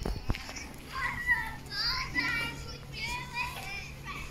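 Children playing, calling out and chattering in high voices, over a faint steady low hum.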